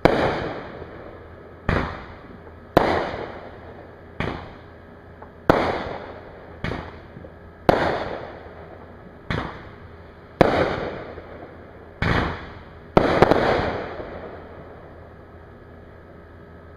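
Aerial fireworks bursting in a rapid series: about a dozen sharp booms, roughly one every second or so, each trailing off in a fading echo, with two bursts close together near the end.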